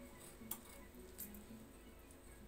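Faint snips of scissors cutting through folded fabric, two short clicks about half a second and a second in.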